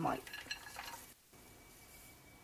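Dried herbs and rosebuds tipped off a plate into a nonstick pot: light rustling with small clinks for about a second. Then the sound cuts off abruptly to a faint steady hiss with a thin high tone.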